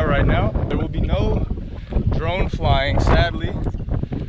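Strong wind buffeting the microphone, a heavy steady rumble, with people's voices talking through it.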